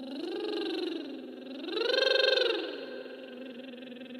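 A woman's voice singing a wordless line. The pitch slides up and back down twice, the second rise higher and loudest about two seconds in, then settles into a held low note.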